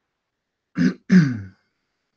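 A man clearing his throat: two short rasps close together, about a second in.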